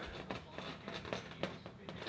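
Faint, scattered small clicks of a metal split key ring and keys being handled as a charging cable's hook is worked onto the ring.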